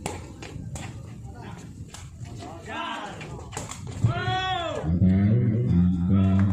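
Shouts and calls from people around a sepak takraw court, with several sharp smacks of the rattan-style ball being kicked. A loud, deep voice takes over for the last second or so.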